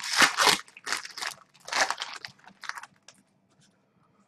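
A foil trading-card pack wrapper being torn open and crinkled by hand: several sharp crackling bursts over the first three seconds, then only faint rustling.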